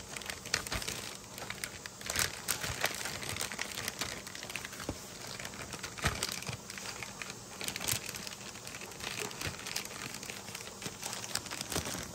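Plastic zipper freezer bags crinkling and rustling as filled bags of slaw are handled and slid into a larger plastic bag, with scattered sharp crackles throughout.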